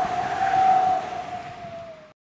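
Logo-sting sound effect: a rushing whoosh of noise with a steady ringing tone through it, swelling and then fading away.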